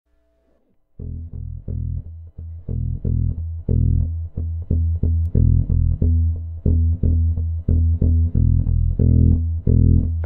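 Instrumental opening of a rock track: a bass guitar riff of short plucked low notes repeating steadily at about three notes a second, starting about a second in after near silence.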